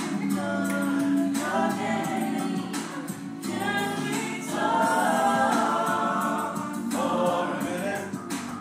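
Several voices singing together in a choir-like, gospel style, phrase after phrase.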